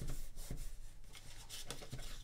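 Origami paper being folded and creased flat by hand on a wooden tabletop: quiet rubbing and rustling of paper with a few soft taps.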